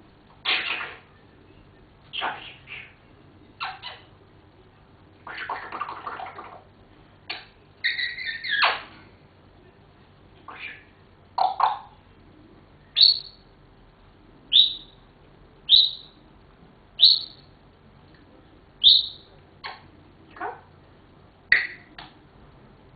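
African grey parrot calling in short separate bursts. The first half is a mix of harsh squawks, two of them longer and rougher. Then comes a string of brief whistles, each dropping in pitch, about one every second and a bit.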